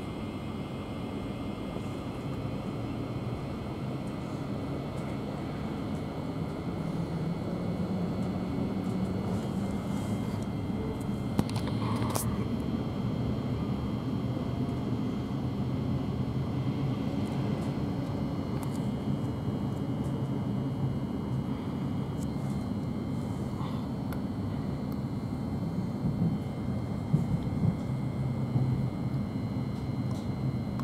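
Steady running noise inside a Thameslink Class 700 electric multiple unit in motion: a continuous low rumble of wheels and running gear on the rails, with faint steady high tones above it. A single brief knock comes about twelve seconds in.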